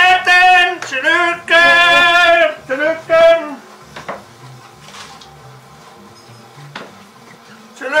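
A man cheering in celebration with loud, drawn-out shouts, several in a row over the first three seconds, then only quiet room sound with a few faint ticks until another shout right at the end.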